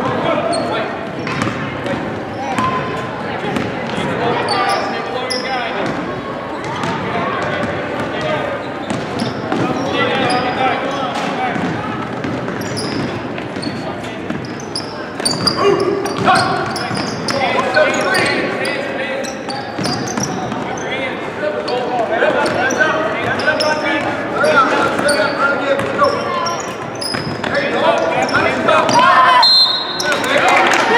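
Basketball game play on a hardwood gym floor: the ball bouncing, sneakers squeaking in short high chirps, and players and spectators calling out, all echoing in the hall.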